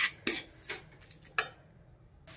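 Metal spatula scraping and knocking against a metal kadhai while spices and fenugreek leaves are stirred: four short strokes, the last about a second and a half in.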